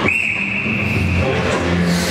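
A long, steady high-pitched tone starting abruptly and held for about two seconds, over arena music.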